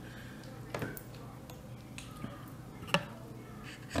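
A metal spoon clicking against a glass bowl of sauce: a few short, sharp clicks, the loudest about three seconds in, over soft tableside noise.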